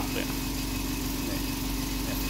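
Sharp KI-GF50 air purifier running steadily: an even fan hum with a constant low tone and the rush of air through the unit.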